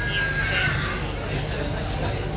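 A horse whinnying once: a high, wavering call about a second long that fades early on. Behind it are a murmur of voices and a low steady hum.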